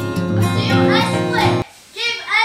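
Acoustic guitar background music, with young voices calling out over it from about half a second in. The music cuts off suddenly near the end.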